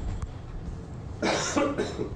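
A person coughing twice in a room, a longer harsh cough about a second in followed at once by a shorter one.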